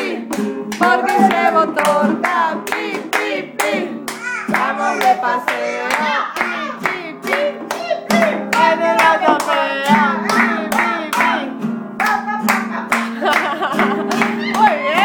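Guitar strummed to a steady beat while voices sing a children's song along with it, with hands clapping in time.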